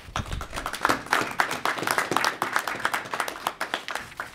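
Applause: a group of people clapping steadily.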